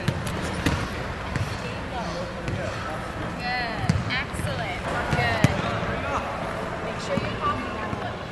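Echoing sound of a large indoor ice rink: a steady low rumble with scattered thumps, a sharp knock about five and a half seconds in, and distant voices.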